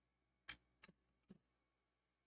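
Three faint knocks in about a second from handling at the bench: the soldering iron is set down and the laptop motherboard is taken hold of on its work mat. The first knock is the loudest.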